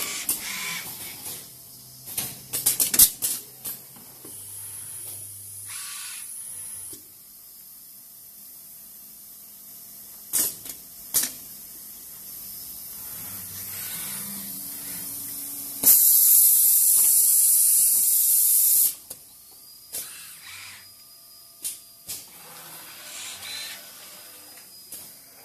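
Pneumatic equipment of an automated wiring-harness robot cell working: scattered sharp clicks and short air hisses, then a loud hiss of compressed air lasting about three seconds, starting about two-thirds of the way through.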